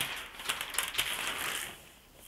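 Crisp tracing paper rustling and crackling as a large sheet is pulled off a pad, fading out near the end.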